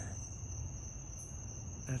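Night insects trilling steadily on one high unbroken note, over a low background rumble.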